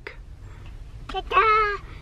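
A small child's short, high-pitched, wavering vocal sound about a second in, like a squeal or a playful meow, over the low rumble of a car cabin.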